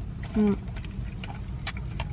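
Steady low rumble of a car heard inside its cabin, with a few small clicks from eating fries and handling the packaging.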